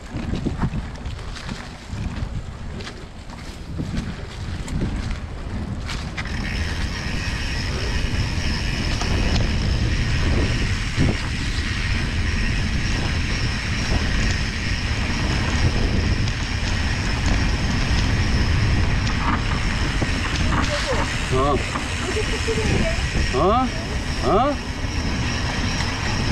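Mountain bike rolling along a dirt trail strewn with dry leaves: wind buffeting the microphone and tyre noise, with a steady high hiss joining about six seconds in.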